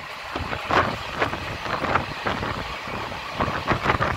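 Passenger express train running at speed, heard from inside the moving coach: steady rolling noise of the wheels on the rails, with wind buffeting the microphone in irregular gusts.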